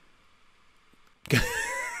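Near silence for about the first second, then a man's voice breaks into a laugh.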